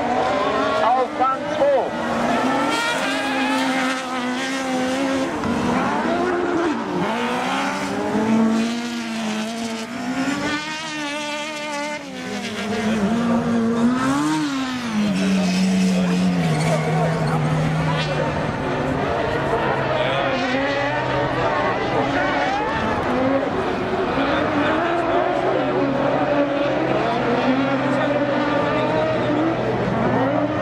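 Autocross race car engines on a dirt track, revving up and down repeatedly as the cars accelerate and lift through the corners. About halfway through, an engine note falls away and settles into a steady low drone.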